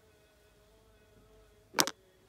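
A single short, sharp noise near the end, made of two or three quick strokes close together, over a faint steady hum.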